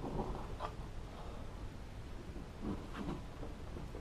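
Faint handling sounds of a plywood backing board being pressed and shifted against a block of upholstery foam: a few soft scuffs and knocks, about half a second in and again around three seconds in.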